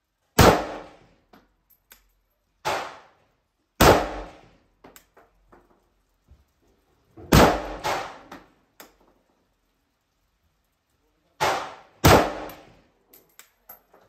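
An AK-pattern WASR rifle with a KNS gas piston fires single shots at an unhurried pace. There are about seven reports, several seconds apart and some louder than others, each followed by a short echo, with small faint clinks between the shots.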